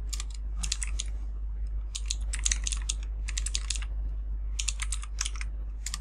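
Computer keyboard typing: quick runs of keystrokes in several bursts, separated by pauses of about half a second to a second, over a steady low hum.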